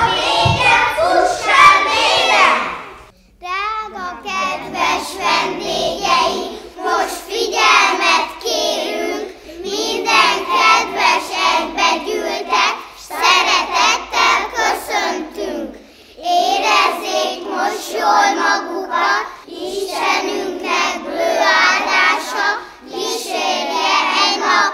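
Young children singing a song together, in phrases of a few seconds with short breaks between them. The sung part starts after a brief pause about three seconds in.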